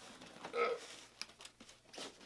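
Quiet handling of a large cardboard box: flaps rustling and scraping, with two sharp ticks, one just past a second in and one near the end. A short vocal sound comes about half a second in.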